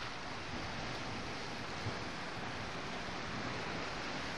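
Steady wash of choppy sea water mixed with wind noise on the microphone.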